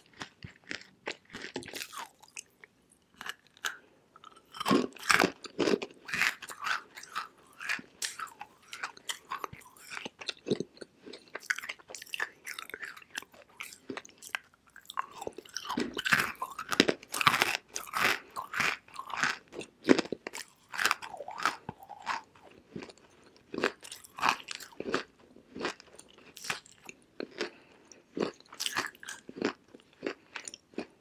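Close-miked biting and chewing of dry lumps of edible clay: irregular crisp crunches, busiest a little past the middle, with two short lulls before fresh bites.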